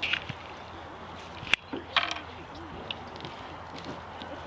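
Quiet, faint talk, with a single sharp click about a second and a half in.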